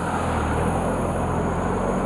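Cars driving past on the street: a steady low engine and tyre rumble.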